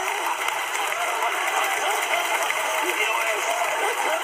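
Men's voices talking over one another with laughter, played through a television speaker and picked up by a phone, so the sound is thin with a steady hiss underneath.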